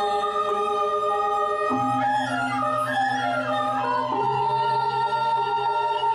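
Balinese gamelan gong kebyar music playing a slow passage of long held notes that step to a new pitch every couple of seconds, over a low, steadily pulsing tone.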